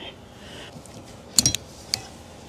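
Plastic clicks of a windshield wiper blade's connector being slid off the wiper arm's J-hook after its release tab is pressed: a quick cluster of sharp clicks about one and a half seconds in, then a single click just before the end.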